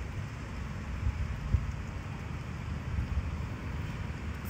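Wind buffeting the phone's microphone: an uneven low rumble over a faint steady hiss, with one brief low thump about a second and a half in.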